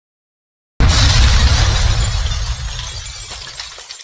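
Stock sound effect for a video outro: a sudden loud crash with a deep boom about a second in, fading away over the next few seconds with scattered small clinks.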